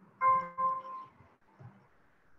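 A short electronic notification chime of two quick pitched tones, of the kind a computer or meeting app plays.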